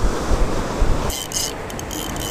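Wind buffeting the microphone over the beach surf. About halfway through there is a brief rustle, and a thin, steady high whine begins.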